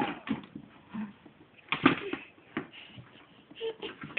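A toddler rummaging head-first in a plastic toy drawer: scattered light knocks and short, muffled vocal sounds, the loudest about two seconds in.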